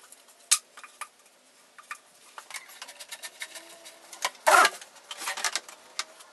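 Handling noise of a flexible plastic exhaust hose and its fitting being connected to a spray booth's exhaust port: scattered clicks and light rustling, with one louder scrape of about half a second a little past two-thirds of the way through.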